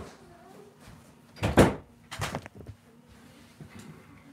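A door shutting with a loud thump about one and a half seconds in, followed by a couple of smaller knocks.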